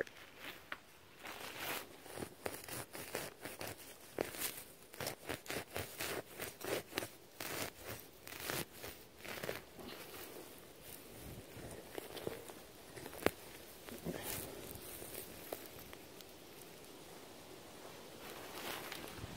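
A hand digger cutting through grass turf and soil: a run of short crunching, tearing sounds that thins out and grows softer after about ten seconds, with grass rustling close to the microphone.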